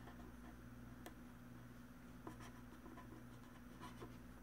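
Faint strokes of a felt-tip pen writing on paper: a few soft scratches and taps over a steady low hum.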